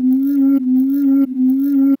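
Laser-blast sound effect for a cartoon robot's laser: one steady held tone with brief small dips, cutting off suddenly at the end.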